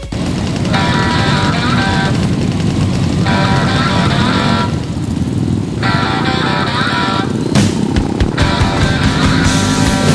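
Several motorcycle engines running at low speed among a crowd, with music playing over them.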